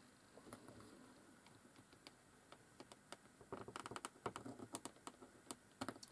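Small craft-knife blade shaving slivers off a wooden twig. It is faint at first, then a quick run of small clicks and scrapes begins about halfway through.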